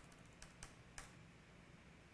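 Faint computer-keyboard clicks: a few scattered keystrokes as typed text is deleted, over near-silent room tone.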